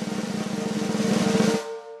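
Snare drum roll sound effect growing louder for a reveal, stopping abruptly about one and a half seconds in and leaving a ringing note that fades out.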